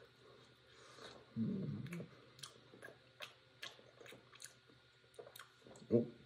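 A person biting and chewing a crisp-crusted air-fried mini pizza slice, with short crunches two or three times a second. A brief voiced hum comes about a second and a half in.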